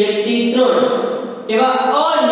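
A man's voice speaking in a sing-song lecturing tone, with long drawn-out vowels and a short break about one and a half seconds in.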